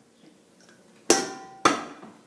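Two sharp knocks about half a second apart, the first slightly louder, each followed by a brief ringing tone.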